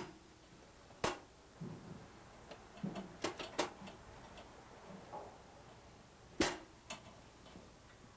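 Scattered light metallic clicks and knocks of hardware being handled while the dumbwaiter's trolley is bolted on. Two sharper knocks come about a second in and about two-thirds of the way through, with lighter ticks between.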